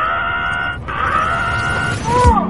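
A steady pitched tone with several overtones, held, cut off briefly about a second in, then held again.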